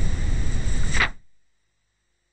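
Loud, steady rushing noise with a strong low rumble, like wind on a microphone or the roar of a busy hall. It fades out just after a second in, leaving silence.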